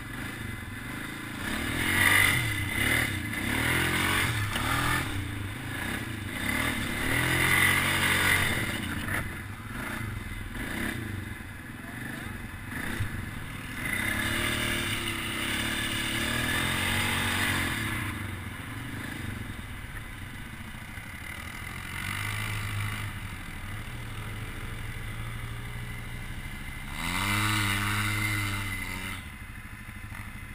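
ATV (quad) engine running under way, revving up and easing off in repeated surges as it is ridden over rough trail, heard from on the machine.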